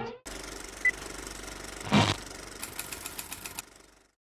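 Steady mechanical whirring and rattling of a movie-camera/film-reel sound effect, with a short beep about a second in, a thud about two seconds in, and a run of quick clicks near the end before it fades out.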